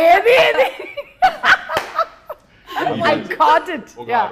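People laughing in several short bursts, mixed with laughing speech, with a brief lull in the middle.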